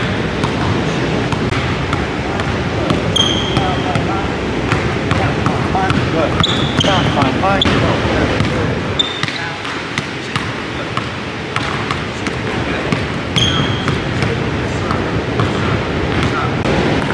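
A basketball being dribbled on a hardwood gym floor, with a fast run of sharp bounces throughout. A few short, high sneaker squeaks come in between.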